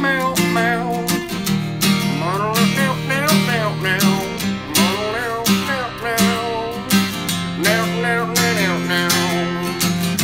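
Acoustic guitar with a capo, strummed in a steady rhythm of about two strums a second, under a wordless sung melody that glides up and down.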